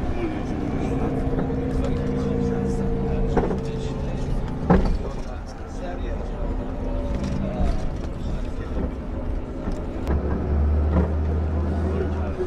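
A coach's engine running, heard from inside the cabin as a steady low rumble, with voices and a couple of sharp knocks. The deep hum grows stronger near the end.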